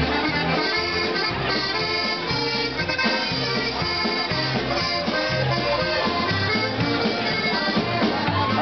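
Live Czech polka band playing an instrumental break between sung verses: a reed melody over electric bass and a steady, bouncing polka beat.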